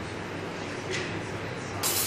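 Light handling sounds of a road-bike wheel and tyre being worked by hand, with a small click about a second in. A steady hiss starts suddenly near the end.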